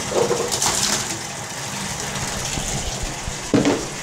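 Tap water running steadily into a bathtub, with a splashing clatter of small rubber ducks being tipped into the water about half a second in. A brief knock near the end.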